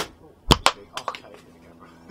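A sharp bang about half a second in, with a click just before it and a few lighter clicks near the one-second mark.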